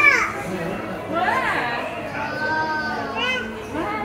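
Children's voices chattering and calling out, their pitch gliding up and down.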